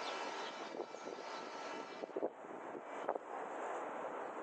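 Steady outdoor city ambience: an even hum of distant traffic, with a couple of short sharp clicks a little past two and three seconds in.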